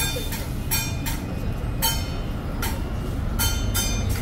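Metal percussion from the procession band: hand cymbals crashing in uneven clusters, about three strikes a second, over a continuous low rumble.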